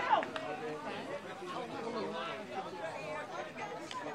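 Several voices chattering and calling out at once around an Australian rules football field, with one sharp falling shout right at the start.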